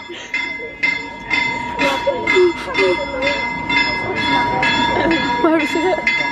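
Steam train chuffing in an even rhythm of about two strokes a second, with a steady high tone held over it.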